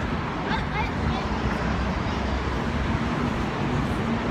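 Street traffic running steadily, with a constant low engine hum and a few faint voices of people nearby.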